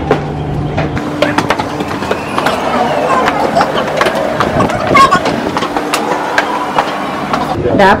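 Footsteps on stone steps, a stream of short sharp knocks, over the chatter of a crowd of people on the stairs.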